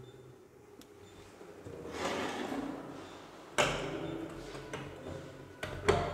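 A handleless hinged access panel over a pipe riser is swung shut. There is a rustle of movement, then a thump about three and a half seconds in, and a couple of light clicks near the end as the panel is pressed closed.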